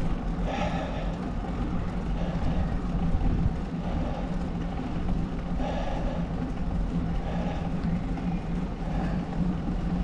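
Steady wind and road noise while riding a bicycle, with a constant low rumble and a soft swell that comes and goes every couple of seconds.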